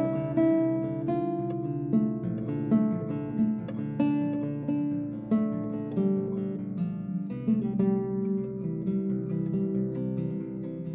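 Extended-range classical guitar with extra bass strings played fingerstyle, a slow melody in D minor: single plucked notes over low notes left ringing underneath.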